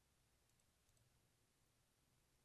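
Near silence, with a very faint computer mouse click about halfway through.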